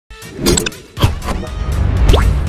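Animated logo intro sting: two sudden swooshing hits, about half a second and one second in, the second falling in pitch, then a low rumble that builds.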